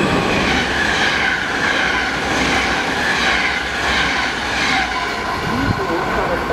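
NS VIRM double-deck electric intercity train passing through a station at speed: a loud, steady rush of wheels on rail, with a clatter that recurs about once a second.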